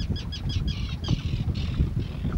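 Birds calling: a quick series of short, high calls running into a fast chatter about half a second in, fading near the end. Wind rumbles on the microphone throughout.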